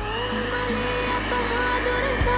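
Electric hand mixer starting up and running steadily, its beaters whipping fresh cream powder and water in a glass bowl. Background music plays underneath.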